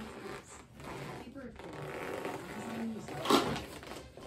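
Quiet voices and a latex balloon being handled, with one short, louder sound a little over three seconds in.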